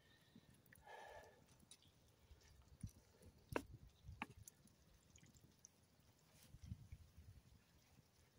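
Near silence: a pan of food left to simmer over a campfire, with a few faint clicks about three to four seconds in as a wooden spatula stirs it.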